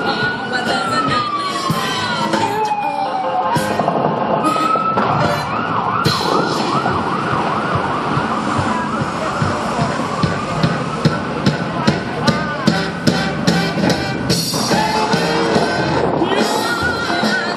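An emergency vehicle siren winds slowly up and down, then switches to a fast warbling yelp about five seconds in, heard over music. A run of sharp bangs comes near the end.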